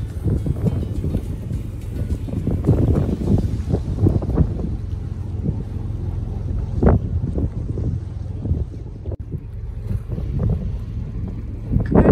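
Wind buffeting the microphone aboard a moving boat on open water: an uneven, gusting rumble with swells a few seconds apart.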